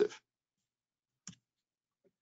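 Near silence broken by a single short, faint click just over a second in.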